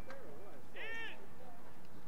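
People shouting: one short, high, arching shout about a second in, over other distant calls.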